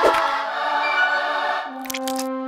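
Cartoon score with a choir singing long held notes, opened by a quick swoosh and ending with a couple of short clicks.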